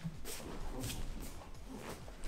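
Faint swishes and rustles of a wooden practice sword (bokken) kata: the sword swung through the air and the hakama shifting as the body turns, in about three short strokes.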